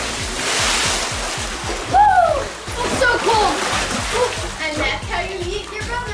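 Pool water splashing and churning just after a boy jumps into a swimming pool, fading over about two seconds. Then yells and laughter over background music.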